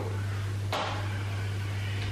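A steady low hum, with one short soft noise about three quarters of a second in.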